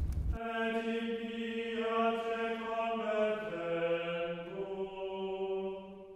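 Slow sung chant: voices holding long notes that move to a new pitch every second or two, fading out at the end. A low rumble under the singing cuts off just after the start.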